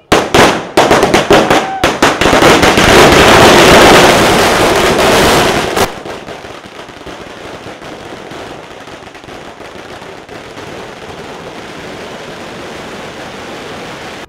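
A string of firecrackers going off in a rapid, very loud barrage of bangs that starts all at once. After about six seconds it drops to a steadier, quieter crackle.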